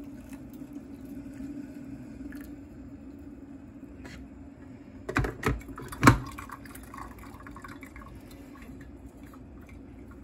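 Coffee trickling from a Mr. Coffee 12-cup coffee maker's brew basket into a stainless steel mug, over a steady low hum from the machine. A few knocks about five seconds in and a loud clunk just after six seconds as the glass carafe is pushed back into place under the basket.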